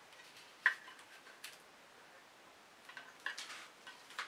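A plastic acrylic paint bottle being handled: one sharp click a little over half a second in, a fainter click about a second later, and a few soft clicks and rustles near the end.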